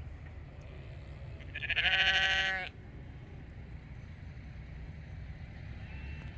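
A sheep bleats once, about a second and a half in: one wavering call lasting just over a second.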